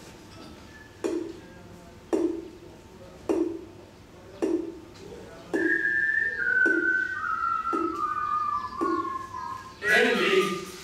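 A slow, steady beat of thumps, about one a second, from a group's found-object performance; about halfway through, someone whistles a tune that steps down in pitch over the beat.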